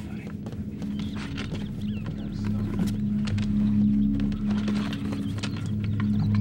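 Live rats scrabbling and squeaking, with scattered clicks. A low steady drone builds under them from about two and a half seconds in.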